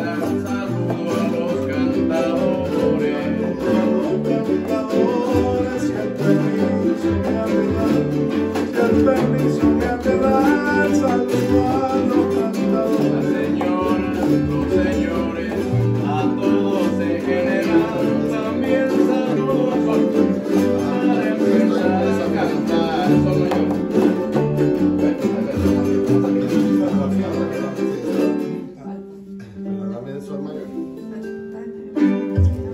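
Live acoustic ensemble of several small guitar-like string instruments strummed together in a steady rhythm, with voices singing over them. The playing stops suddenly about a second and a half before the end.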